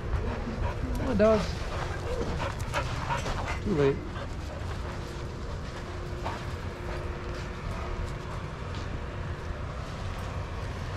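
A dog gives two short, pitched whining yelps, about a second in and again near four seconds in, over a steady low rumble.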